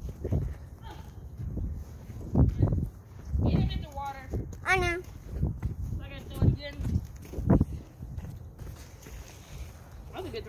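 Phone microphone bumped and rubbed while the phone is carried, giving irregular low thuds. Twice in the middle come high, wavering vocal sounds without words.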